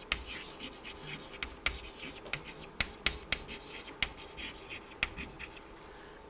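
Chalk writing on a blackboard: a repeated scratchy hiss as the strokes are drawn, broken by many short, sharp taps where the chalk strikes the board.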